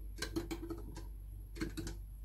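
Metal teaspoon clinking against a small drinking glass while stirring liquid: light, irregular ticks, in a cluster near the start and another past the middle.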